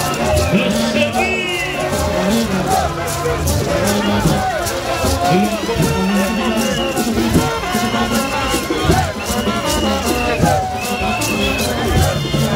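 A Haitian rara band playing live in a dense crowd: a steady percussion beat under held high notes, with the crowd's voices mixed in.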